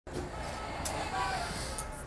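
Background ambience: a steady low rumble with a faint distant voice and a brief click just before a second in.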